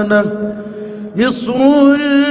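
A man's solo voice chanting an Egyptian ibtihal (Islamic devotional chant). A long held note ends at the start, and after a pause of about a second a new phrase begins, sliding up into another held note.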